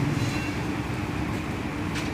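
A steady low mechanical rumble with a hum, like a motor or engine running in the background.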